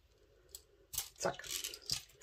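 Scissors snipping through a plastic bead chain once, a short sharp cut about a second in.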